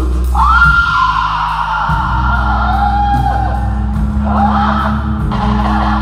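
Live rock band playing loud over steady low sustained notes; a long high wailing note comes in just after the start and slides slowly down over about three seconds, followed by busier guitar playing.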